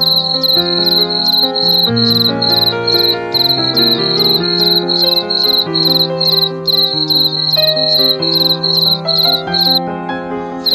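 Cricket chirping in a steady rhythm, about three chirps a second, over soft, sustained music chords that change slowly.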